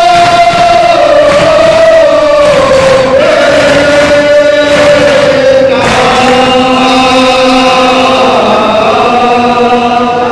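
Male voices chanting a Muharram mourning lament (noha) in unison, in long, drawn-out held notes that step to a new pitch about three and six seconds in.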